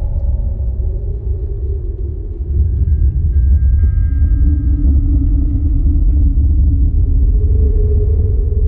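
Live ensemble music: a deep sustained rumble that swells about two and a half seconds in, under slow, gliding low drones, with thin high held tones entering about three seconds in and fading out near the sixth second.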